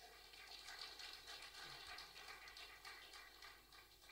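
Audience applauding faintly, a dense patter of claps that dies away near the end.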